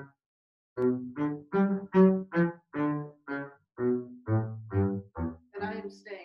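Double bass played with a bow: after a brief pause, about a dozen short, separated notes of changing pitch, a little over two a second.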